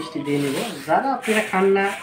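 Thin plastic bag of sugar being handled and pulled open, its film rubbing and crinkling, under a man's voice.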